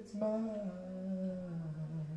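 A man singing one long held note into the microphone, gliding slowly down in pitch and settling low.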